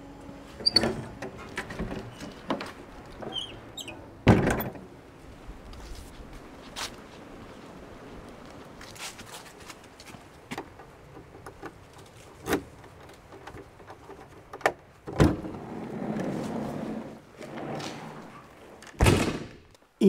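Doors being shut and opened: a door thuds shut about four seconds in, a key clicks in a door lock, and more door thuds follow near the end.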